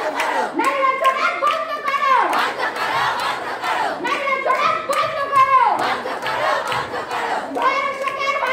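A crowd of women chanting protest slogans, led through a handheld microphone, with hand clapping. The chant comes in repeated phrases, each ending on a falling pitch.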